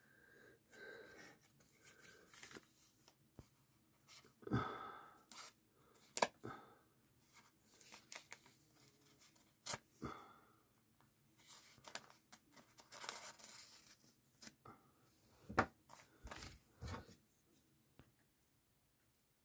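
A paper envelope being slit open with a QSP Penguin folding knife. There is faint paper rustling and tearing, broken by scattered light clicks and taps.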